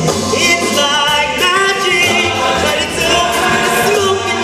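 Show choir of young men singing a song in parts over instrumental accompaniment with a steady bass beat.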